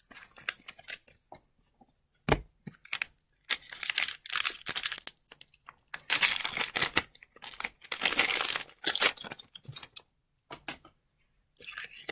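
Wrapper of an Upper Deck hockey card pack being torn open and crinkled, in irregular bursts over several seconds. A single sharp knock comes about two seconds in.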